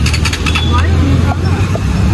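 Motorcycle engine idling with a steady low hum, with short bits of talking over it.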